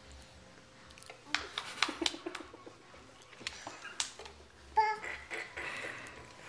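A toddler chewing banana: scattered soft clicks and smacks in the middle, then a short high-pitched voice sound near the end.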